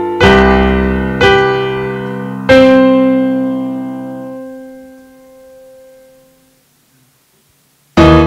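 Sampled piano from a children's music-composition app playing back a short composition as it is saved to a WAV file. Three chords are struck about a second apart; the last is held and dies away, then about a second of silence before a new chord at the very end.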